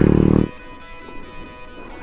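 A small motorcycle's engine running loudly as it rides close past, stopping suddenly about half a second in; background music carries on for the rest.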